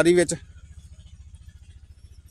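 A man's voice trails off early on, leaving an engine running steadily somewhere off, a low, even throb.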